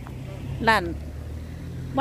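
Low, steady engine drone of a nearby motor vehicle, with a short spoken word about a second in.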